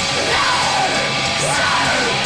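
Live heavy rock band playing loudly, with the singer yelling into the microphone in long, bending cries over the music.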